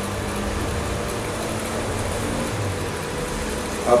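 Steady room noise: an even hiss with a low, unchanging hum, like a fan or air conditioner running.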